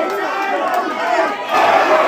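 Fight crowd shouting and cheering, many voices at once, growing louder about one and a half seconds in.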